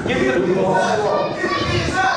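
Speech: a man talking into a handheld microphone in a large hall.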